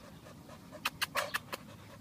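Dog panting close to the microphone, a quick run of about six short breaths about a second in, as it cools itself on a hot day.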